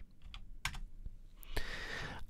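A few soft computer keyboard keystrokes, separate faint clicks spread over the two seconds, as a value is typed into a field.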